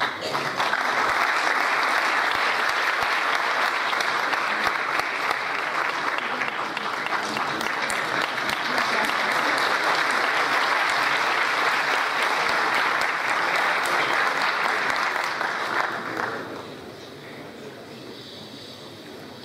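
Audience applauding steadily, dying away about two seconds before the end.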